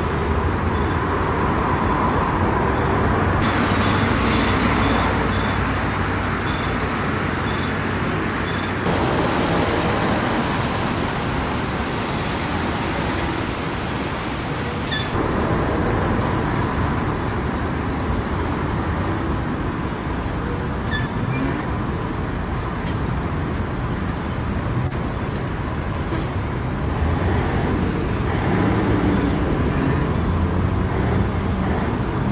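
Steady city road traffic: a continuous wash of passing cars on a busy multi-lane road. A faint, regular high beeping runs for a few seconds early in the traffic noise.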